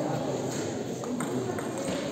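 Table tennis ball clicking in a rally: three sharp hits of the ball on bat and table in the second half, over the constant chatter of a sports hall.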